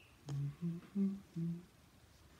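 A person humming a short tune of four brief notes that rise in pitch and then fall back.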